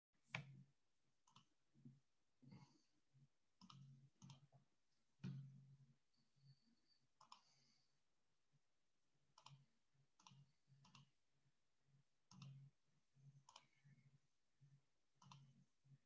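Faint computer mouse clicks, short and irregularly spaced, roughly one or two a second, over near silence.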